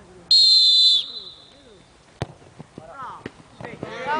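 Referee's whistle, one steady high blast of under a second, signalling that the free kick may be taken. A little over two seconds in, a single sharp thud of the ball being struck.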